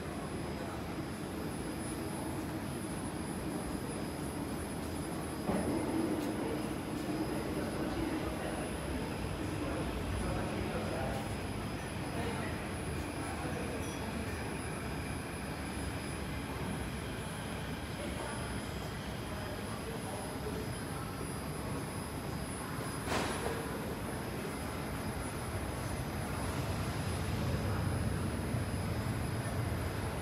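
Steady hum of an underground metro station platform, mostly ventilation and machinery, with a faint high whine and a low murmur of voices. A single sharp knock comes about three-quarters of the way through.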